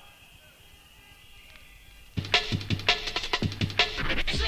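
Hardcore rave track from a DJ set: a quiet, faint stretch for about two seconds, then a fast beat with a heavy kick drum comes in at full level.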